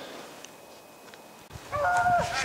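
A low outdoor hiss for about a second and a half, then a pack of beagles baying in high, drawn-out notes near the end: the hounds giving tongue as they run a rabbit.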